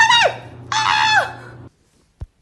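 High-pitched voice: the end of one long call, then a second call that rises and then falls away, over a low steady hum that cuts off suddenly near the end.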